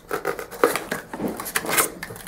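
Cardboard foam casting box being handled and shifted: irregular scraping, rubbing and light knocks of cardboard, loudest a little over half a second in and again near the end.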